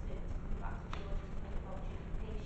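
A woman talking at a distance in a large, echoing room, over an uneven low rumble, with one sharp click about a second in.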